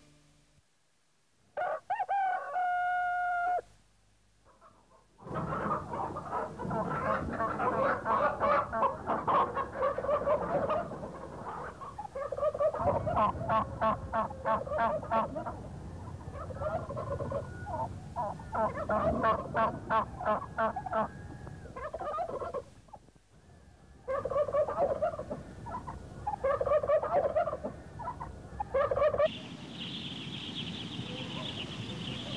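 Chickens clucking busily, with a rooster crowing once about two seconds in; the clucking pauses briefly around two-thirds of the way through.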